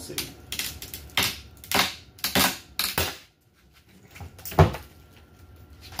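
Chain snap cutter worked around a small Keokuk geode: the chain links and handle click and knock several times as it is tightened, then a single loud crack about four and a half seconds in as the geode splits. The geode is solid rather than hollow.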